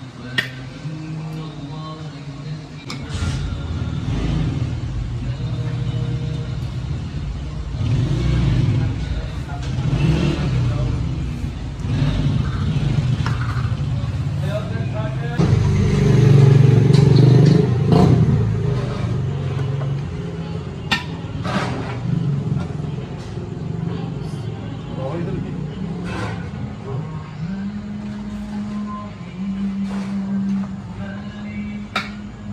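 Busy street ambience: motor traffic running with people talking in the background, and a few sharp clicks through it.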